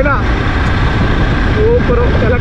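Wind rush on the microphone and a motorbike running at steady riding speed, a loud, even rumble with a thin steady whine over it. A man's voice breaks off just after the start and comes back near the end.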